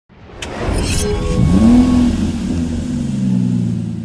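Car engine revving: after a click and a short rasp, the pitch rises sharply about a second and a half in, then eases down and settles into a steady idle.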